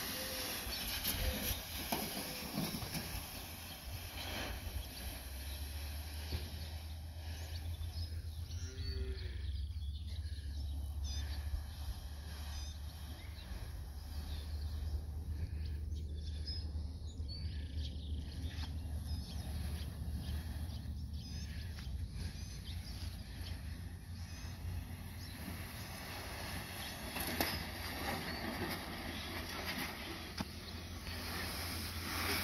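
Outdoor rural ambience: a steady low rumble, typical of wind on the microphone, with faint bird chirps scattered through the middle.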